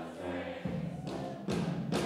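A New Orleans-style brass band playing live: held horn chords over sousaphone bass, with drum strikes about a second in, again halfway through and near the end.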